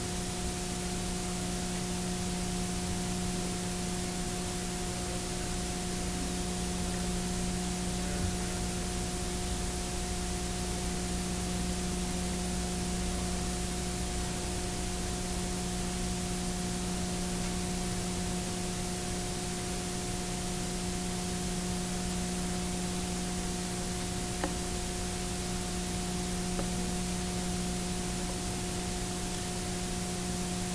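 Steady hiss with a low electrical hum in the background of the recording, and no audible speech. Two faint ticks, one about eight seconds in and another a few seconds before the end.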